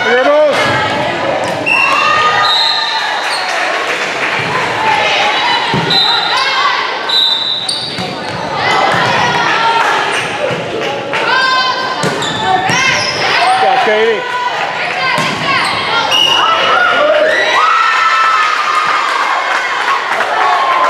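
Indoor volleyball rally on a hardwood gym court: the ball is hit repeatedly, sneakers squeak in short high tones, and voices call out, all echoing in the large hall.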